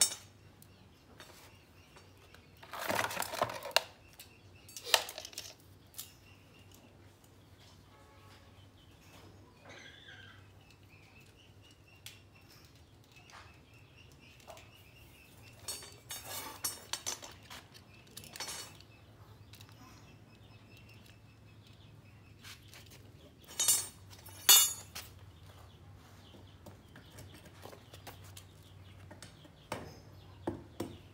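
Intermittent handling clatter: short knocks, clinks and rustles in a few clusters, the loudest pair near the end, over a faint steady hum and faint bird chirps.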